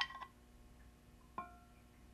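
A metal spoon clinking against a small skillet while scooping scallops out: a ringing clink fading just at the start, and a second short clink with a brief ring about one and a half seconds in.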